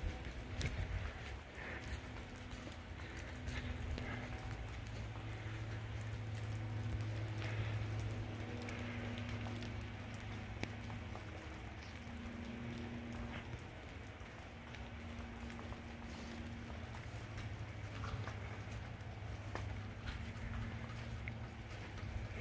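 Rain falling steadily, with scattered ticks of drops and a low hum underneath.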